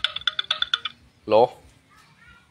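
A rapid run of short, high electronic beeps, about ten a second, lasting roughly a second, like a phone ringtone or notification. It is followed by one brief, loud vocal sound.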